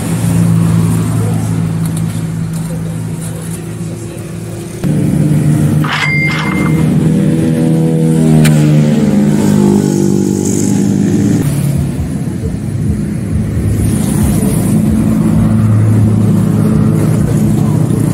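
Motor vehicle engine running close by, a steady low drone that jumps in level about five seconds in, with a pitch that rises and falls through the middle.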